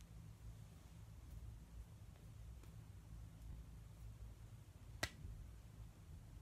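Near silence with a low steady hum, broken about five seconds in by a single sharp click from the hands meeting during finger-tutting moves.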